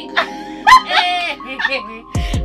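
Two women laughing heartily in short, high bursts of laughter, the loudest about two-thirds of a second in.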